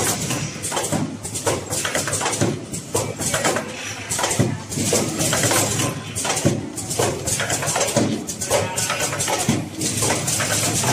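A mask packaging machine running, its pneumatic pushers and conveyor clattering with a dense run of irregular clicks and knocks over a high hiss.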